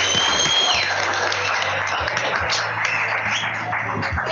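Television studio music with a studio audience applauding, from a reality dating show clip.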